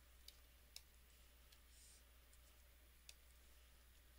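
Near silence: faint room tone with a few small, scattered clicks.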